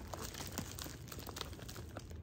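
Tissue paper and cellophane wrap crinkling in a run of small crackles as a wrapped gift box is handled and lifted out of a paper gift bag.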